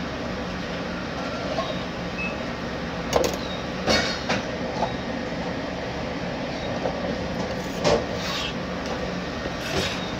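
A scalloped knife knocking sharply on a plastic cutting board a few times while slicing bell peppers, over a steady mechanical hum.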